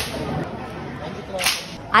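Two sharp whip cracks about a second and a half apart, over a background of crowd murmur.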